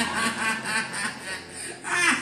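A woman laughing into a handheld microphone: a run of short, quick laughing bursts that tails off near the end.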